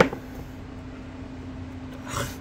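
Handling of a portable monitor's folding fabric smart cover: one sharp click right at the start, then only a faint steady low hum of room noise.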